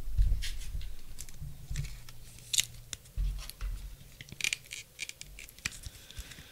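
Trading cards and plastic card holders being handled on a table: a dull bump at the start, then a run of short, sharp scrapes and clicks.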